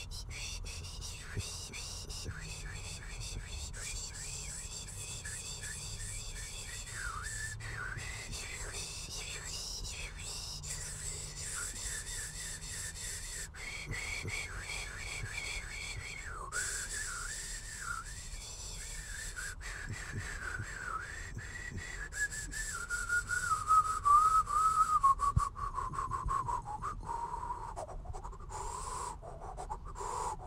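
A person whistling a tune, his own rendition of a famous song's guitar solo, in quick wavering notes. The melody grows louder in the last third and slides downward in pitch near the end.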